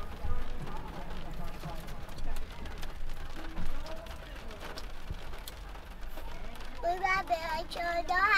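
Rain falling on a parked car's roof and windshield, heard from inside the cabin as scattered ticks of drops over a low rumble. Quiet voices come and go, and a child's high voice starts near the end.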